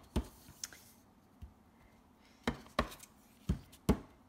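A clear acrylic stamp block pressed down repeatedly onto card stock, giving about six short, sharp taps at uneven intervals: the sprig image being stamped all over without re-inking for a paler, third-generation print.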